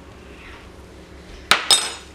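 Two quick metallic clinks about a fifth of a second apart, the second with a short bright ring: a metal spoon being set down after spreading the filling.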